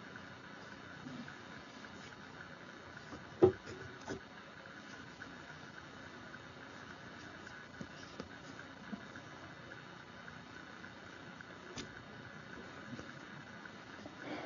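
Quiet room with faint rustling and small ticks of fingers working yarn, twining weft through warp strands. One sharp tap about three and a half seconds in, and a softer one just after.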